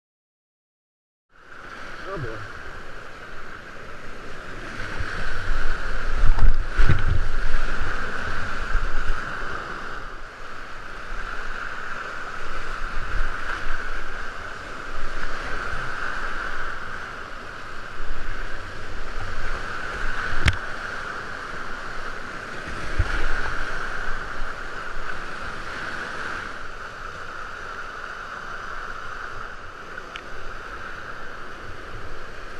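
Whitewater rapids rushing around a kayak, heard from a camera mounted on the boat, starting after a second and a half of silence. Irregular low thumps run through the rush, with a sharp click about twenty seconds in.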